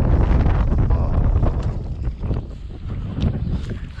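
Wind buffeting the microphone, a heavy low rumble that is strongest for the first two seconds and then eases. A few short, sharp sounds come through it.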